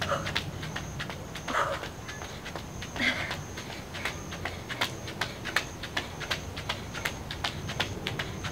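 Quick, rhythmic footfalls of sneakers landing on an exercise mat over concrete during a hamstring jog, heels kicking up toward the glutes, a few steps a second.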